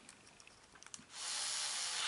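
A hand hex driver turns the axle screw in a Pro-Line Pro-Fusion SC 4x4 rear hub carrier. A faint tick or two comes first, then, about a second in, a steady high-pitched hiss lasting about a second as the screw is tightened. Tightening presses the driveshaft's hex back against the bearings and pinches them.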